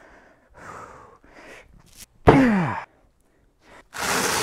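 A man taking a few sharp breaths as he psyches himself up to break a concrete paver by hand, then letting out one loud martial-arts yell that falls steeply in pitch and cuts off abruptly.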